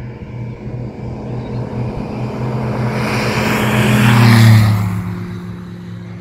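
Sling 4 TSi light aircraft's turbocharged Rotax 915 iS four-cylinder engine and propeller at take-off power, growing steadily louder as it climbs out toward and past. It is loudest about four and a half seconds in, then drops slightly in pitch and fades as it passes.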